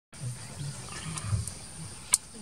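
Female Asian elephant rumbling low, the rumble swelling and fading several times, with a couple of faint clicks about a second in.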